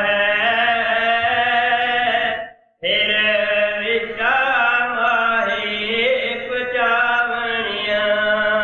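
A man chanting a devotional verse in long, drawn-out sung notes, breaking off briefly about two and a half seconds in before going on.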